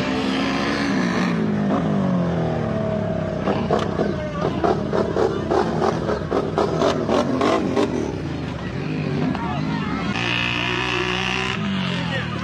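ATV engine revving hard, its pitch gliding up and down. Through the middle comes a rapid run of sharp revs, and it revs high again near the end.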